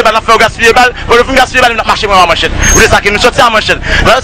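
A person speaking rapidly and continuously in an outdoor recording.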